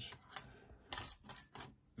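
A handful of light clicks and clacks as lock picks are handled and set down on a table, about five in two seconds at irregular spacing.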